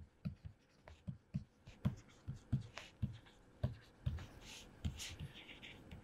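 Faint handwriting with a pen: a string of light, irregular taps and short scratching strokes as words are written out.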